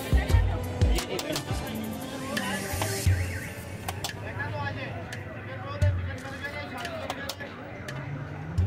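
Long steel knife shaving chicken off a vertical shawarma spit, with repeated sharp clicks and scrapes of the blade against a steel spoon and tray, over background music and voices.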